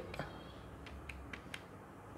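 A few faint, irregular clicks of keys being pressed on a handheld calculator, heard over quiet room tone.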